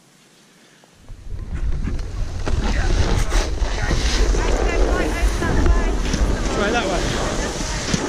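Wind buffeting the camera's microphone as a loud low rumble, starting suddenly about a second in, with people's voices heard through it.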